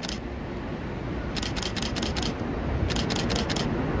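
Camera shutters firing in rapid bursts of about four frames, twice, over the low rumble of an electric-locomotive-hauled passenger train approaching on a steel bridge, growing louder.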